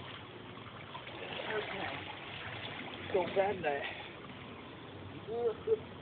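Shallow creek water running steadily over rocks, with short voice exclamations over it.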